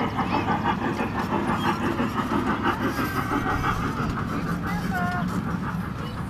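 Small trackless park train driving past on a paved path, its motor running with a steady drone.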